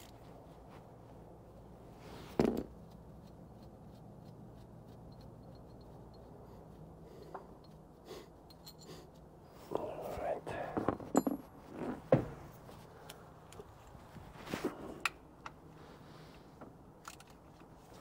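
Scattered clinks, knocks and ratchet clicks of hand tools on metal as the timing gear cover installer tool is unbolted from a Volvo D13 diesel engine, over a faint steady hum. The knocks come in a busy cluster in the middle and a few more near the end.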